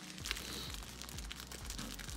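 Faint rustling and crinkling of plastic-wrapped card packs and packaging being handled, with scattered small clicks over a low hum.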